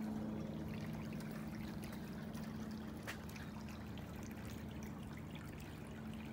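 Small glazed urn bubbler fountain, pump-fed, trickling steadily as water wells over its top and runs down the sides, with a steady low hum underneath and a single faint click about halfway through.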